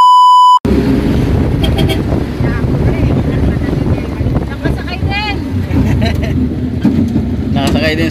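A loud electronic test-tone beep for under a second at the start, then the steady low rumble of a mini jeepney's engine and road noise heard from inside the passenger cab, with people talking and laughing over it.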